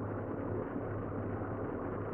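Steady low hum with a soft hiss of room noise, no speech.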